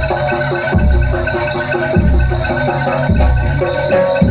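Live Javanese jaranan campursari music: a gamelan-style ensemble playing a repeating pattern of short metallophone notes over deep gong-like strokes that fall a little more than once a second.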